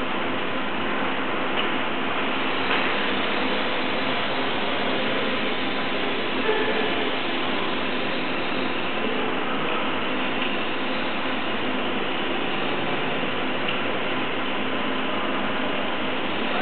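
Steady background noise with a few faint clicks.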